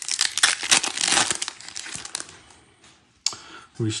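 A baseball card pack's wrapper being torn open and crinkled by hand: dense crackling for about two seconds that then fades away. A single short click follows a little after three seconds in.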